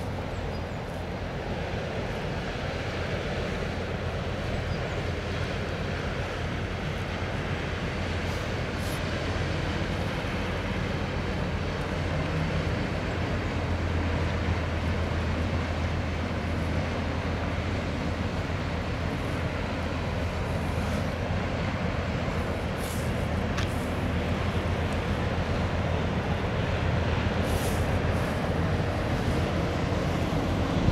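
Twin Caterpillar 3512 diesel engines of a loaded inland container motor ship droning steadily as it passes under way, the low hum growing a little louder as the ship comes closest, over a rush of water and wind.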